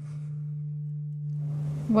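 Steady low electrical hum from the sound system: a single pure tone with a faint higher overtone, unchanging throughout.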